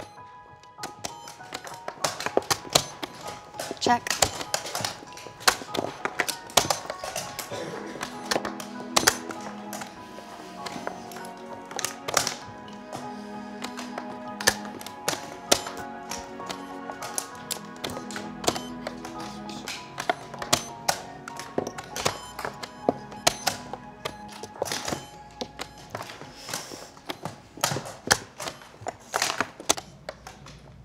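Background film music over a run of many sharp taps: chess pieces being set down on boards and chess clock buttons being pressed. A player says "Check" a few seconds in.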